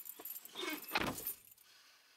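A bunch of car keys jangling in the hand, with a single dull thump about a second in.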